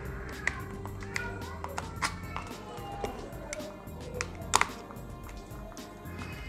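Background music, with several sharp clicks and taps as a laptop lithium-ion cell is handled and pushed into a plastic spring-contact battery holder of an electric mosquito racket; the loudest click comes about four and a half seconds in.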